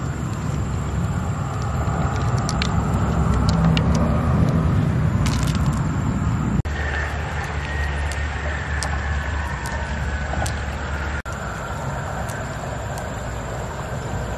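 A steady low rumble, with small scattered clicks of pearls knocking against each other and the shell as they are picked out and gathered in a hand.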